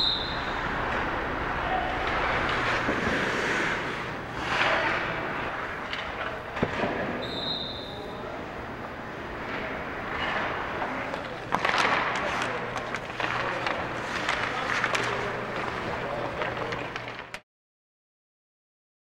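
Ice hockey practice in an arena: skates scraping on the ice, scattered stick and puck knocks and players' voices, over a steady low hum. The sound cuts off abruptly just before the end.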